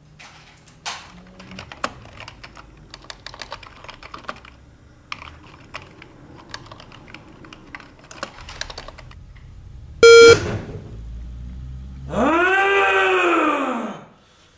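Computer keyboard typing, rapid key clicks in bursts, then one short, very loud electronic beep about ten seconds in. Near the end a man lets out a long, loud cry that rises and then falls in pitch.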